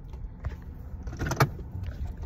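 Steady low rumble of a car's cabin, with one brief short sound a little after halfway.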